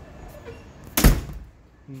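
A door slams shut once, about halfway through, with a loud low thud that dies away over about half a second.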